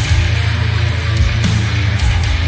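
A heavy metal band playing live: distorted guitars over heavy bass and pounding drums with repeated cymbal crashes, in an instrumental stretch without vocals.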